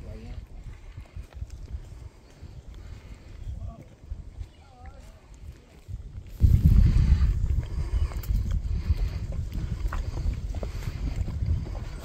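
Wind buffeting the microphone: a gusty low rumble that grows much louder about six seconds in. A faint voice is heard briefly in the middle.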